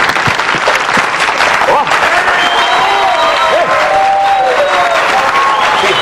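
Studio audience applauding steadily. From about two seconds in, drawn-out voices call out over the clapping.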